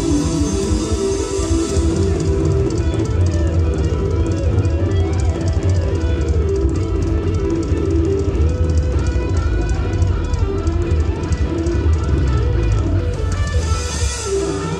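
Live cumbia band playing: electric guitar and bass over drum kit and hand percussion, with a fast, even beat.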